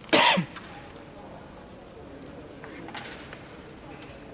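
A single short cough near the start, falling in pitch, with faint background voices afterwards.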